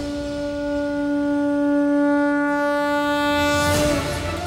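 Dramatic background score holding one long reedy note that swells slightly and cuts off just before the end.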